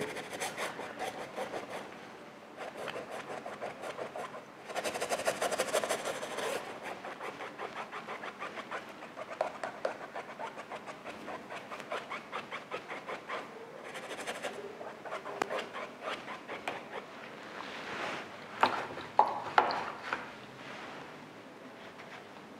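Paintbrush scrubbing acrylic paint into canvas in quick, short back-and-forth strokes, with a louder run of strokes about five seconds in and a few sharper taps near the end.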